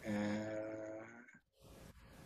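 A man's voice holding a long, nasal hummed "mmm" of about a second, one steady pitch drifting slightly lower, as he waits to see whether a keyboard shortcut works.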